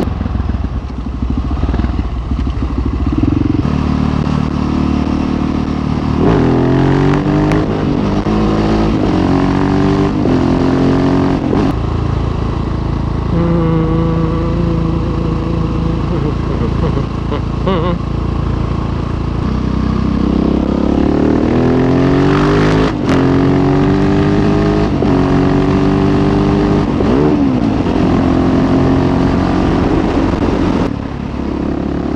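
Husqvarna 701 Supermoto's single-cylinder four-stroke engine under way, heard from the rider's seat. The engine twice accelerates hard up through the gears, its pitch climbing and dropping back at each shift, with a steadier cruising stretch in between.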